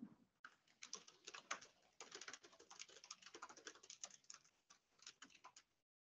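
Typing on a computer keyboard: a quick, faint, irregular run of key clicks that stops just before the end.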